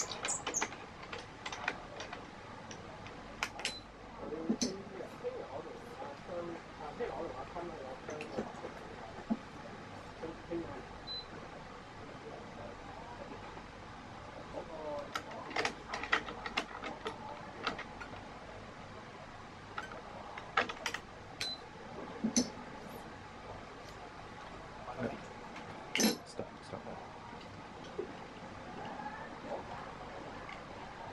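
Badminton string being woven by hand through a racket on a stringing machine, with scattered sharp clicks and ticks of string against string, frame and metal clamps.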